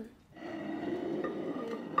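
A woman clearing her throat: a drawn-out rasping sound lasting over a second, ending in a sharp cough. It is set off by the strong fumes of the chili sauces.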